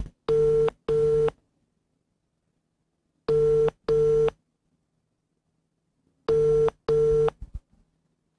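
Telephone ringback tone of an outgoing call ringing at the other end: three double rings, each a pair of short steady beeps, repeating about every three seconds.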